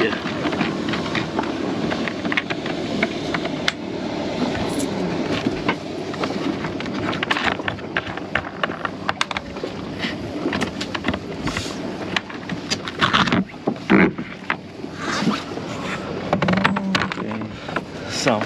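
Scattered clicks and knocks as a sailboat's teak-covered deck locker hatch is unlatched and lifted open, the loudest knocks a little after the middle. Underneath is a steady rush of wind and water.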